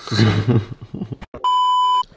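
A short burst of voice, then a steady electronic beep lasting about half a second near the end that cuts off sharply, an editing bleep laid over the soundtrack.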